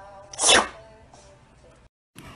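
A cat sneezing once: a single short, sharp burst about half a second in, over faint background music.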